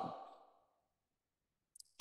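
Near silence between phrases of a lecturer's narration: the last word fades out at the start, and a short intake of breath comes near the end, just before speech resumes.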